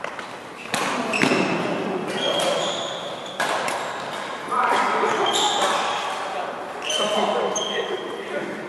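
Badminton rackets hitting a shuttlecock back and forth in a large hall, sharp hits every second or two, several followed by a short high ping.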